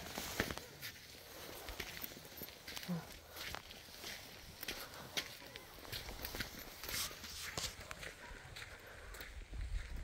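Footsteps of a person walking on a dirt and grit bush track strewn with leaf litter, at a steady pace of about two steps a second.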